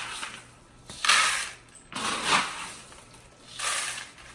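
Gray expanded clay pebbles (LECA) rattling as they are poured into a plastic plant pot. They come in three separate pours about a second apart, the second loudest.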